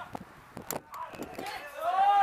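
Shouting on a football pitch: a few short knocks and faint calls, then a loud, drawn-out shout that rises toward the end.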